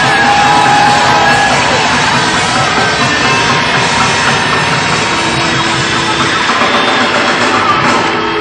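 Live rock band playing loudly, with a long bent note in the first second or so.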